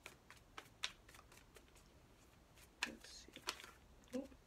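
Tarot cards being shuffled by hand: a few sharp card snaps and slaps over a soft rustle, the sharpest near one second and about three seconds in.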